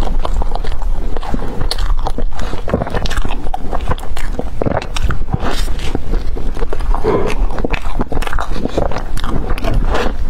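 Close-up biting and chewing of a soft cream-filled bread roll: mouth sounds with many small, irregular clicks and smacks.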